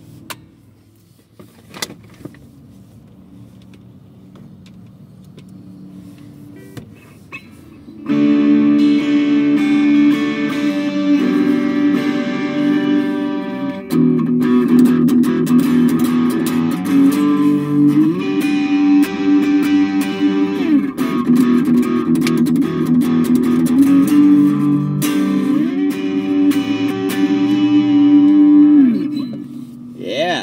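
Epiphone Les Paul electric guitar with twin humbuckers played through a small battery-powered Blackstar 3-watt travel amp. A low hum and a few clicks come first; from about eight seconds in, loud chords ring out, with notes sliding in pitch between them, and the playing stops just before the end.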